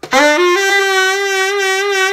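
Original lacquer Selmer Balanced Action tenor saxophone, on its original worn pads with no resonators, being played: a few quick rising notes into a long held note. Something on the horn buzzes along with it, which the player traces to the side C key vibrating and blowing open on its light spring.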